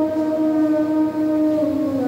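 Hymn singing in church, the voices holding one long note that steps slightly lower near the end.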